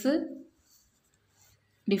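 A person's voice speaking in a maths lesson, breaking off about half a second in; near silence follows, with a faint rustle or two, before the voice starts again just before the end.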